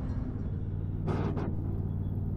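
Ride-on miniature train running along the track: a steady low rumble with a droning hum.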